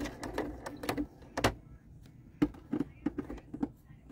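Sewing machine stitching through layered fabric in two short, slow runs of clicking stitches, with a pause of about a second in between.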